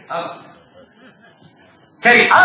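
Crickets chirping in a steady, fast pulsing trill, with a brief louder sound just after the start.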